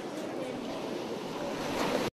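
A steady wash of ocean surf with faint voices underneath, growing slightly louder toward the end.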